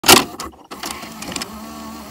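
A VHS cassette being pushed into a VCR: a loud clunk, then a click, then the loading mechanism clicking and a steady motor whir as it draws the tape in.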